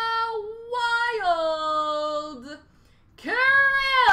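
A person's voice singing out long, high held notes: the first drops in pitch about a second in and fades out, and after a brief gap a second, louder note swells up and is held near the end.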